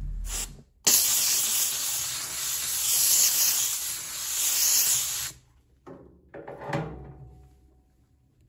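Steam cleaner jet hissing onto a leather boot's welt and sole edge, cleaning it. It starts suddenly about a second in, runs evenly for about four and a half seconds and cuts off suddenly.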